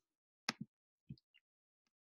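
Near silence with a few faint short clicks, one about half a second in and smaller ticks around a second in, typical of a computer mouse clicking to pick a pen colour.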